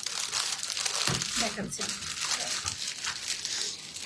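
Clear plastic packaging bag crinkling steadily as it is handled and opened.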